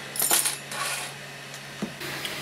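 Metal spatula scraping across a 3D printer's build plate to lift off a finished print, two brief scratchy strokes over a steady low hum.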